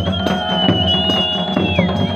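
Live Pahari folk music for a devotional dance: drums and a tambourine beaten in a quick steady rhythm, about four to five strokes a second. Over them a long high melodic note is held and then bends downward near the end.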